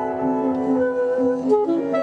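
Live jazz quartet playing, with alto saxophone out in front over piano, double bass and drums; the sax holds a long note about a second in.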